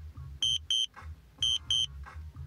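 DJI drone controller warning beeps: two short, high beeps repeated about once a second, the low-battery alarm while the drone is auto-landing. A low music beat runs underneath.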